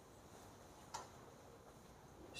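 Near silence: room tone in a pause of speech, with one faint short click about a second in.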